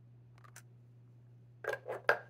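Small plastic clicks and clacks of a Jinhao Shark fountain pen and its parts being handled: a couple of faint ticks about half a second in, then two louder sharp clacks near the end. A steady low hum runs underneath.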